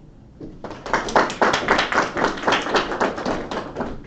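A small group applauding, many hands clapping at once. It starts about half a second in and dies down near the end.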